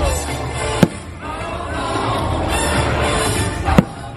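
Fireworks bursting over show music: two sharp bangs, one about a second in and one just before the end, cut through the music that plays throughout.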